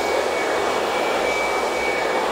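Hand-held hair dryer blowing steadily, a smooth rush of air with a thin, steady high whine over it.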